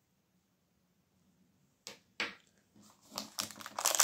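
Two light clicks, then a clear plastic bag crinkling as it is handled, starting a little after halfway and growing louder toward the end.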